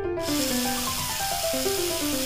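Electric hand drill running steadily as it bores into green bamboo, an even hiss that starts about a quarter second in, with piano music playing over it.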